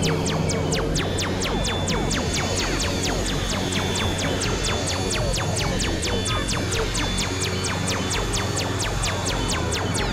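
Experimental electronic synthesizer music: a steady pulse of sharp clicks, about four a second, over low droning tones with small gliding pitches scattered through.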